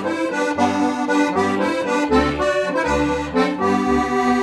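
Accordion playing a lively tune: a melody over a regular alternating bass-note-and-chord accompaniment.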